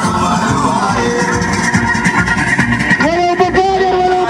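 Loud music played over a parade float's loudspeakers; a long held note comes in about three seconds in.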